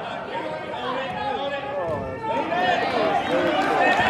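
Several spectators and coaches shouting and cheering at once, their voices overlapping, louder from about two seconds in.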